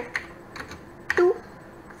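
Keys being typed on a computer keyboard: a handful of irregular keystroke clicks as a file name is entered.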